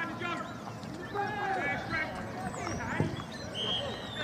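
Players shouting and calling to each other on a grass football pitch, several voices overlapping and too far off to make out, with a single thud about three seconds in.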